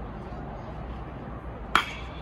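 A metal baseball bat hitting a pitched ball: one sharp crack with a brief ring, near the end.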